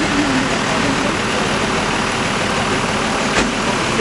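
The diesel engine of a minibus stuck with its front wheel in a roadside ditch, running steadily. There is a single sharp click about three and a half seconds in.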